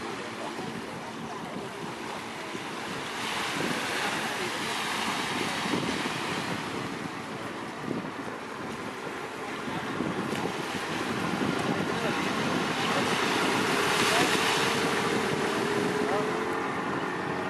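Small waves washing onto a sandy beach, with wind on the microphone; the rushing sound swells about three seconds in and again near the end.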